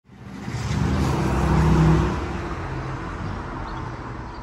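A motor vehicle passing by on the street, growing louder to a peak about two seconds in and then fading.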